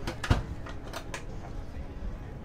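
Aluminum overhead cabinet door pushed shut, its latch catching with a sharp knock and thump, followed by a few lighter clicks.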